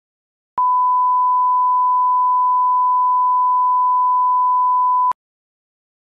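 A steady electronic test tone of one pure pitch, a line-up tone of the kind put at the head of an edited video for setting levels. It lasts about four and a half seconds, starting half a second in and cutting off suddenly, with a click at each end.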